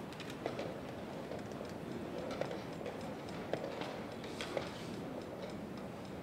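Chess pieces set down sharply on the board and chess clock buttons pressed at a blitz pace: about five short clicks at irregular intervals over a steady hall murmur.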